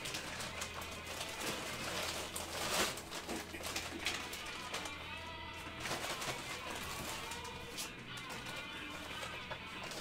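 Repeated rustles and clicks of items and packaging being handled, over faint background music and a low steady hum.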